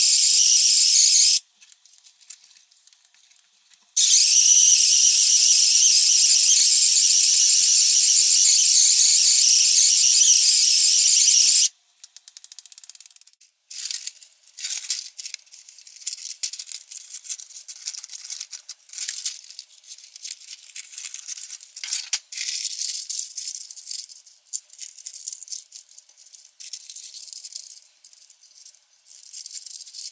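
Handheld electric whisk running at speed in batter in a glass bowl, a steady high whir that cuts out about a second and a half in and starts again at about four seconds, then stops for good at about twelve seconds. After that come irregular crinkling and snipping as parchment paper is cut with scissors and pressed into a baking dish.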